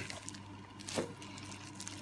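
Faint handling of a closed glass jar holding instant coffee, sugar and water, with one soft swish of the liquid about a second in, over a low steady hum.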